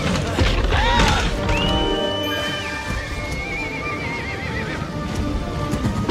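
Film soundtrack with dramatic orchestral music under the whinny of a cartoon winged horse (Pegasus): a long held high cry that breaks into a fluttering, wavering call.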